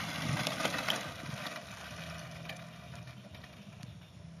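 A cyclocross bike passes close on a dirt and gravel path, its tyres crunching and crackling over loose stones, then fades as it rides away.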